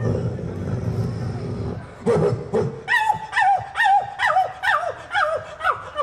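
A man imitating two dogs fighting with his voice into a handheld microphone: a low rasping growl for about two seconds, then a run of sharp yelps, about three a second, each falling in pitch.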